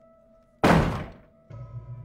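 A single loud bang on a wooden front door about half a second in, dying away within about half a second, followed by a low, sustained drone from the film score.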